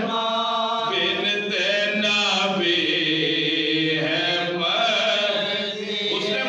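A small group of men chanting a soz, an unaccompanied Urdu elegiac recitation, in long drawn-out melodic lines. One long note is held near the middle.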